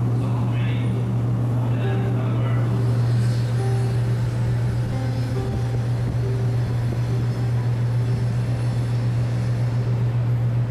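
Steady low hum of a docked cruise ship's machinery and ventilation, with faint voices in the first couple of seconds.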